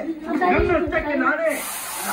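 People talking, with a short, steady high hiss in the last half second.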